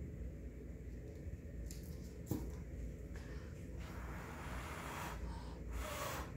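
A person blowing puffs of breath from close range onto wet acrylic paint to push it across the canvas: a soft hiss building over the second half, then a stronger puff near the end. A small click about two seconds in.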